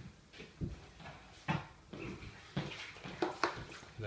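Small objects being handled and set down on a wooden table: a handful of irregular soft knocks and rustles.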